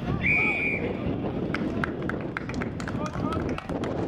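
A single short blast of a referee's whistle just after the start. It is followed by scattered voices of players and onlookers and a run of sharp clicks.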